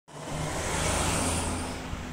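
A car passing close by on the road, its engine and tyre noise swelling and then fading away.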